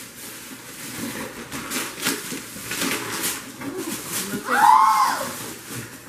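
Wrapping paper rustling and tearing as gifts are unwrapped, a run of crackling sounds. Near the end, a loud high-pitched excited squeal that rises and falls, with the child's face showing delight.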